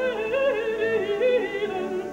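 Operatic mezzo-soprano voice singing a sustained, slowly descending line with wide vibrato over a soft accompaniment.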